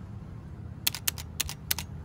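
A quick series of sharp, clicks starting about a second in, coming in small clusters, over a low steady hum.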